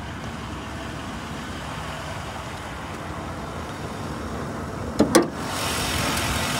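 The 4.6-litre V8 of a 2003 Mercury Grand Marquis idling steadily. About five seconds in come two sharp clunks as the hood is unlatched and raised, and the engine sound grows louder and brighter with the hood open.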